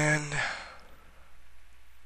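A man's short hesitation sound at the start: a held 'uhh' at one steady pitch trailing into a breathy sigh. Then only faint background hiss.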